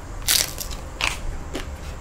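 Biting and chewing a tortilla chip: two loud crunches, about a third of a second and a second in, then a softer one.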